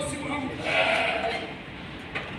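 A sheep bleats once, starting about half a second in and lasting most of a second.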